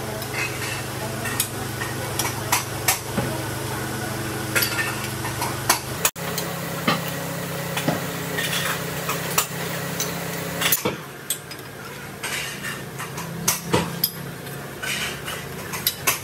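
Thin steel tubes clinking and clanking against each other and a steel jig as they are handled and worked, with sharp metallic knocks every second or so over a steady low hum.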